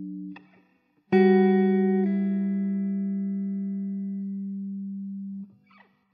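Background music: a held note fades out, and after a short pause a single chord sounds about a second in, rings and slowly fades, then cuts off shortly before the end.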